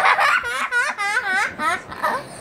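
A young girl laughing hard: a breathy gasp, then a quick run of short high-pitched laughs, about five a second.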